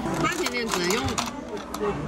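People talking in a restaurant, with a few light clicks in among the voices.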